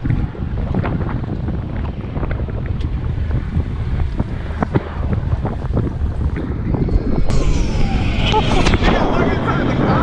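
Wind buffeting the microphone on a moving boat, with water knocking against the hull. About seven seconds in, a Blue Angels F/A-18 Hornet jet swells in over the wind, its whine falling in pitch as it passes.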